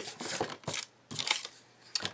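Paper being handled: three short rustles and crinkles in quick succession, then a lull.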